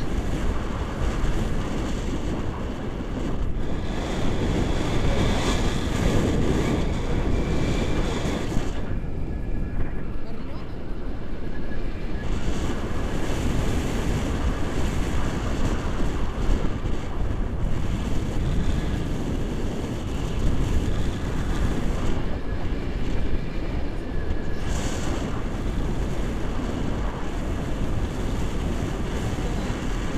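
Wind buffeting the microphone of a camera on a tandem paraglider in flight: a continuous, gusty low rushing.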